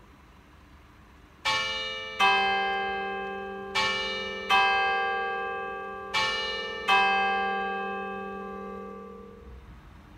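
Two church bells struck alternately, a higher stroke followed by a deeper, louder one, three times over. Each stroke rings on and slowly fades.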